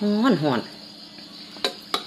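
Crickets chirring steadily, with two sharp clicks of a spoon against a ceramic bowl near the end.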